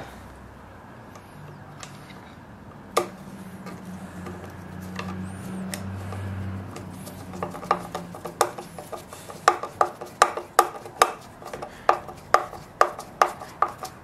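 Hand screwdriver turning screws into the plastic top cover of an Echo PB-265LN leaf blower: a single knock about three seconds in, then a run of sharp clicks about two to three a second through the second half, over a low hum.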